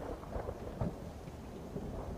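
Low rumble of distant thunder with a faint steady hiss of rain, heard quietly.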